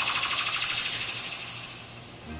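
An electronic sweep rising steadily in pitch with a fast, even flutter. It is loudest about a second in and fades out near the end.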